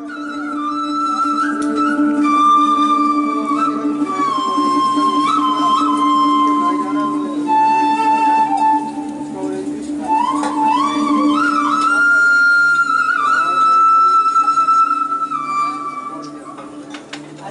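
Solo flute playing a slow new-age melody with sliding, bending notes, over a steady low drone. The music fades in at the start and plays on throughout.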